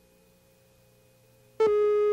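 Near silence with a faint hum, then about one and a half seconds in a loud steady tone with overtones starts abruptly: the reference tone of a videotape leader, sounding under the countdown slate before a commercial.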